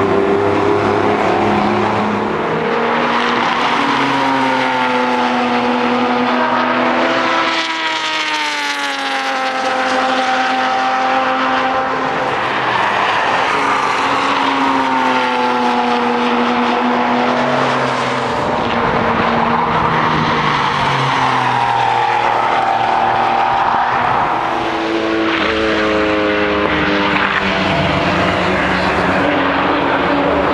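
Engines of several Porsche sports cars lapping a race circuit. The overlapping engine notes rise and fall continuously as the cars accelerate, lift off and pass.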